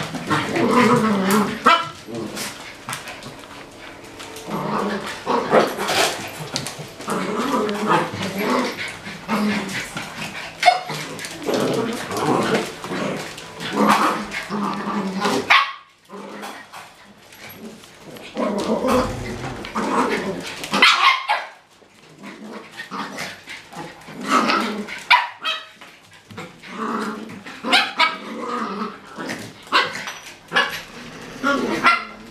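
Dogs barking and yipping over and over as they play together, with brief lulls about halfway through and again a few seconds later.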